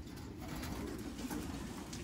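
Racing pigeons cooing faintly in a loft.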